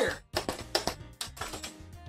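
A few sharp, irregular clicks and knocks over the first second or so, as the motorized Nerf Elite Infinus blaster is fired and handled, with steady background music underneath.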